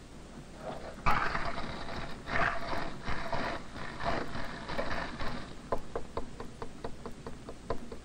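Metal gas sphere lowered into a beaker of melting ice and water, stirring up a few seconds of sloshing and crunching ice. This is followed by a run of light clicks, about four a second.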